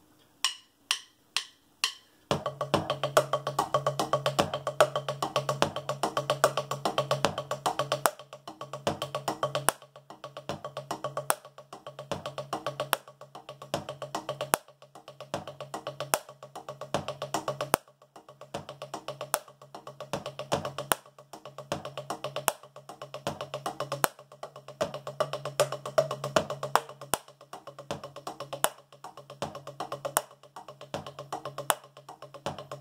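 Wooden drumsticks on a practice pad drum kit: four strokes about half a second apart, then from about two seconds in a fast, continuous stream of strokes with stronger accents about every second and a half.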